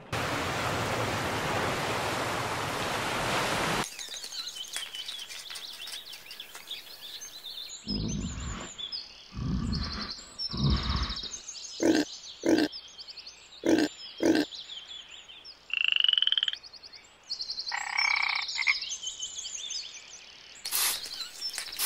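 A rush of noise for about the first four seconds, then frog calls: many short, repeated high trills and croaks, with a few low thumps and sharp clicks among them and two louder calls near the end.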